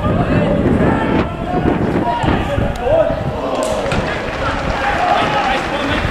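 Outdoor football match sound: wind rumbling on the microphone, with shouts from players and spectators and a couple of sharp knocks, at about one second and three and a half seconds in.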